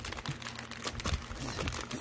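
Clear plastic packaging crinkling and rustling in the hands as a stamp and die kit is slid out of it: a quick, uneven run of small clicks and crackles.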